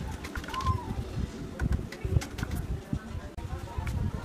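Light metal clicks and handling knocks from hand tools on a motorcycle clutch, as the clutch release adjuster screw is held with a screwdriver and its lock nut tightened with a size 10 wrench. A bird calls briefly about half a second in.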